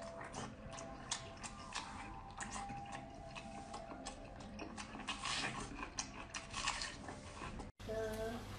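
Faint, irregular wet clicks and smacks of close-miked chewing as a braised pork-skin roll is bitten and eaten.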